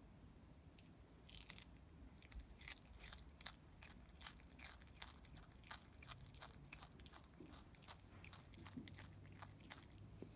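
A brushtail possum biting and chewing a raw carrot: a run of crisp crunches, about three or four a second, starting about a second in.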